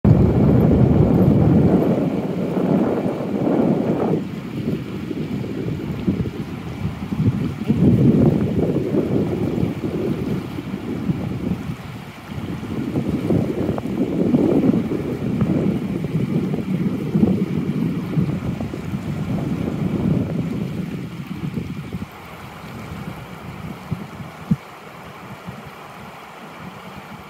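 Wind buffeting the phone's microphone in uneven gusts over the steady rush of river water running across a shallow rapid. The gusts die down near the end.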